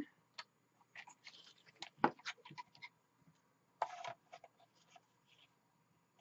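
Cardstock being shifted and handled on a paper trimmer: faint paper rustles and light clicks, with a sharper click about two seconds in and a short rasp near four seconds in.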